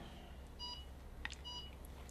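Two short electronic beeps, a little under a second apart, each a single brief tone made of several pitches at once.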